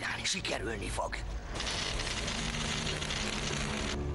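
A short vocal sound, then from about a second and a half in a loud, steady, grainy mechanical noise like a rattling or whirring mechanism, cutting off sharply at the end, over low steady background music.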